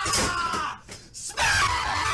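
A man screaming in two bursts: the first falls in pitch and breaks off under a second in, and the second starts about a second and a half in.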